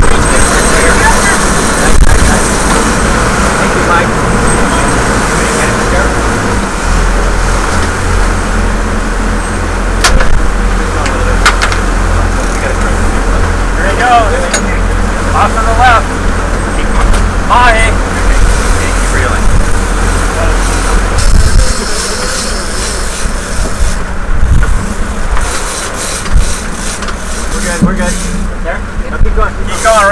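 Sportfishing boat's engines running under way, a steady deep rumble under the rush of the wake and wind, with voices calling out a few times.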